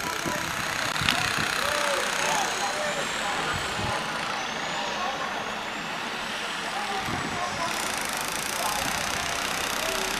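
Outdoor street ambience: a steady wash of traffic noise with people talking in the background. A single sharp click about a second in.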